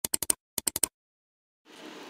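Clicking sound effect: two quick runs of about four sharp clicks each, like a computer mouse or keys being clicked. Near the end a faint steady hum begins.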